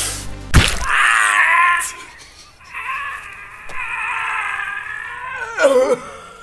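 A man's voice in a strained, high yell, then a long drawn-out wail held for about three seconds, ending in a falling groan. A sharp smack comes just before the yell.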